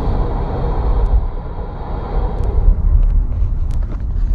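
Low, uneven rumble of a van heard from inside its passenger cabin: road and engine noise, with a few faint clicks.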